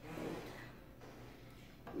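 A short, soft breath, an exhale through the nose or mouth, in the first half second, then faint room tone.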